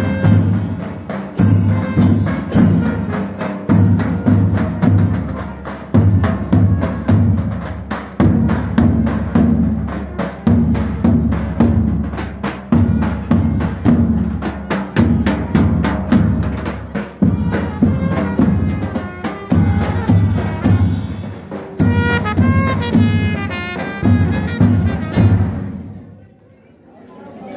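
Mehter band playing a march: davul and large kettledrums beat a steady rhythm with cymbal clashes while brass trumpets play the melody. The music stops abruptly near the end.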